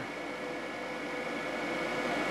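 Solar air heating system's big in-line blower fan and smaller DC fans running steadily: an even whir with faint steady tones in it.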